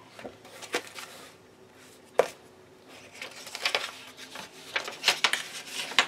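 Paper handling: magazine pages and a folded loose sheet rustling and crinkling as the sheet is pulled out and opened. There is a sharp tick about two seconds in, and the rustling gets denser in the second half.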